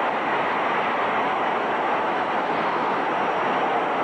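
Boxing arena crowd cheering in a steady, unbroken din at the knockout of a heavyweight title fight.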